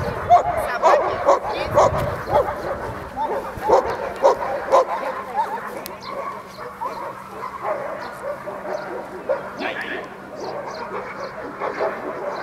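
Dog barking and yelping in rapid, repeated short calls, thinning out in the second half.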